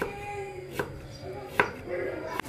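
Chef's knife chopping peeled taro into chunks on a wooden cutting board: the blade knocks through the root onto the wood about once a second, four strikes in all.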